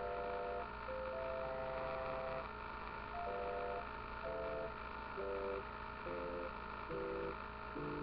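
Simple electronic tune of pure, plain tones played as two- and three-note chords: one long held chord about a second in, then short chords about once a second. A steady low hum runs underneath.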